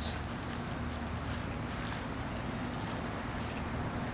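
Steady outdoor background noise: wind on the microphone with a faint low steady hum under it.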